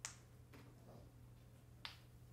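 Near-silent room tone with a steady low hum. Two short, sharp clicks break it, one at the start and one near the end.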